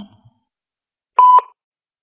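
A single short answering-machine beep, about a second in: one steady tone lasting about a quarter second that starts and stops sharply. It is the record beep after the outgoing greeting, cueing the caller to speak.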